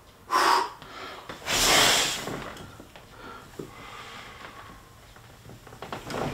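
A man breathing hard with exertion as he pulls himself up on an overhead bar: two forceful exhalations, a short one about half a second in and a longer one around two seconds in.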